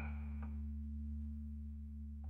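Final held chord of an AI-generated (Suno) song ringing out: a few low steady tones slowly fading.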